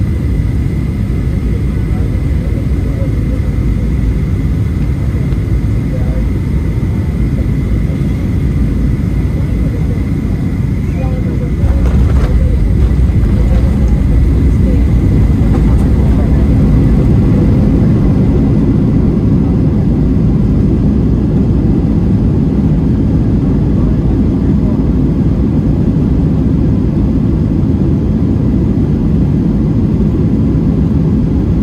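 Boeing 737-800 cabin noise in flight: the steady low roar of the CFM56 turbofans and airflow, heard through the cabin, with a thin steady whine. About twelve seconds in there is a brief knock, the whine fades, and the roar steps up a little louder for the rest.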